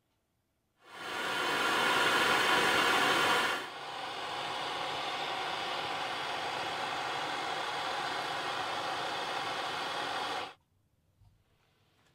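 Steady rushing hiss, like blown air, starting about a second in, louder for the first few seconds, then even until it cuts off abruptly near the end.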